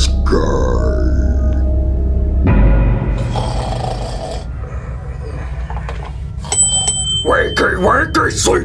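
A man's voice grunting and groaning over a low, ominous music drone that cuts off suddenly about two and a half seconds in. Near the end comes a thin, steady high whine, and then more grunting.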